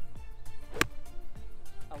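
A wedge striking a golf ball off fairway turf: a single sharp click just under a second in, over background music.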